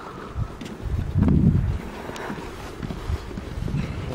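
Wind buffeting the handheld camera's microphone in uneven low gusts, loudest about a second in.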